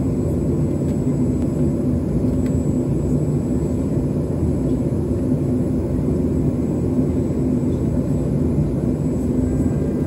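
Steady low drone with a steady hum inside the cabin of a McDonnell Douglas MD-83 as it is pushed back from the gate, with a faint thin high whine above it.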